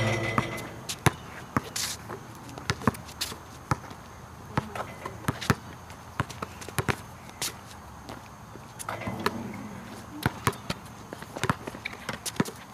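A basketball being dribbled on an outdoor asphalt court: a run of sharp, irregularly spaced bounces, sometimes several a second.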